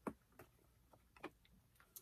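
Near silence with three faint clicks.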